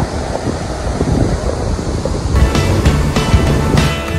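Sea surf washing in, with wind buffeting the microphone. About two and a half seconds in, this gives way abruptly to background music with a steady beat.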